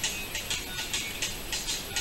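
Background music with a steady, even tick-like beat of about four strokes a second, like a shaker or hi-hat.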